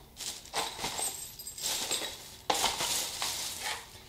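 Handling noise from packaged items on a table: light clinks and knocks with stretches of plastic packaging rustling.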